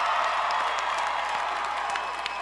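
Crowd applause, slowly dying down.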